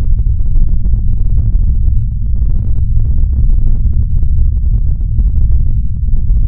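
A loud, deep, steady bass rumble with nothing above the low range, like an edited-in sound-design drone.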